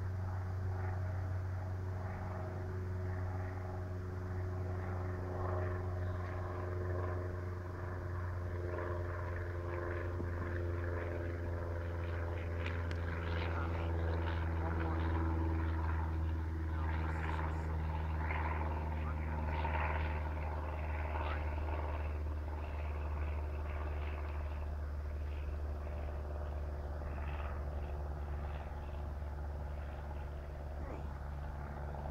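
An engine drones steadily over a low rumble, its pitch drifting slowly up and down.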